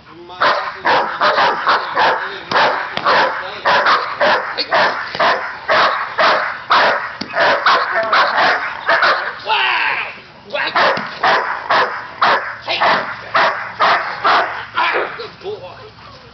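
Dog barking rapidly and without let-up, about two barks a second, in protection-training agitation at a decoy's bite sleeve. There is a short break near ten seconds, then the barking picks up again and stops shortly before the end.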